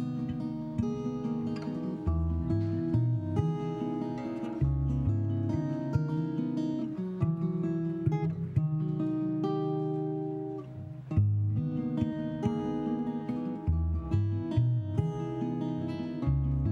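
An acoustic guitar, fingerpicked and strummed, together with a cello, plays the instrumental introduction to a folk song. Low bass notes come in every few seconds under held notes.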